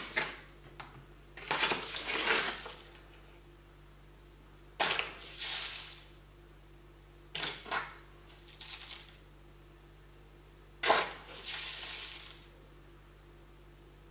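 Granulated sugar shaken out of a paper bag into a ceramic bowl in four short pours, each starting with a sudden patter of crystals on the bowl and trailing off, as it is weighed out a little at a time.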